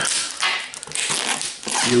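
Clear plastic shrink-wrap being peeled off a cardboard trading-card box, crinkling and crackling in irregular bursts.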